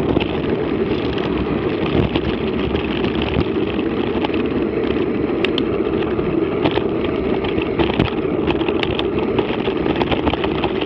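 Mountain bike rolling fast down a dirt track, picked up by the bike's on-board camera: a steady rumble of wind and tyres on gravel, with scattered clicks and knocks as the bike rattles over bumps.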